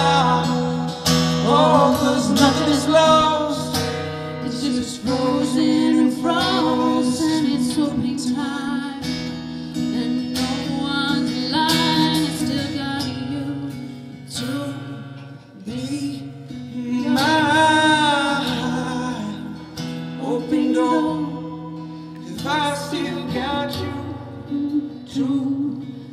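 Live acoustic guitar played under a man's and a woman's voices singing together, the vocal lines sliding and held rather than in clear words.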